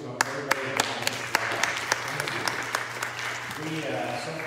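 A small congregation applauding. Sharp single claps close to the microphone stand out, about three a second, and the clapping dies away near the end.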